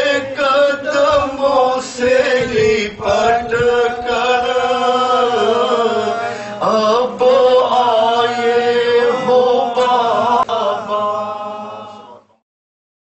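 A man chanting a slow, melodic lament solo, with long held notes that bend up and down in pitch between short breaths. It breaks off at the very end.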